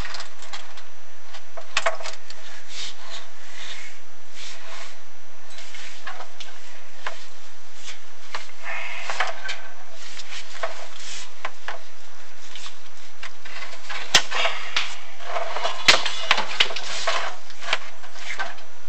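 Scrapes, rubbing and scattered sharp knocks from a chimney inspection camera being worked down a masonry flue, with a cluster of clicks a couple of seconds before the end.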